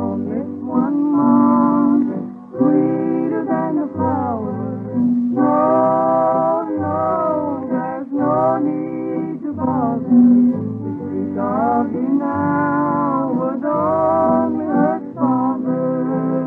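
Old-time country music from an early-1950s radio transcription disc: a wavering melody line over a stepping low accompaniment.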